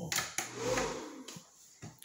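A man's soft, wordless "ooh" that rises and falls once in pitch, with a few light clicks around it.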